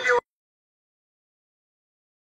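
Silence: the soundtrack is muted. A voice cuts off abruptly just as it begins.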